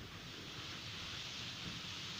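A steady rushing whoosh, a sound effect of water draining away from the seafloor.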